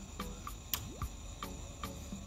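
Crickets chirring steadily at night, with faint regular ticks about three or four times a second.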